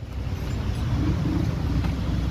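Motor vehicle engine running close by: a low rumble that gets louder within the first half second and then holds steady.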